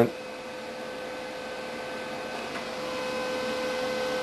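Steady hiss with a faint constant hum running under it: background room tone and recording noise, with no distinct event.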